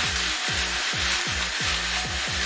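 Penne with aubergine sizzling in a hot frying pan as it is tossed, under background music with a steady beat of about four low thumps a second.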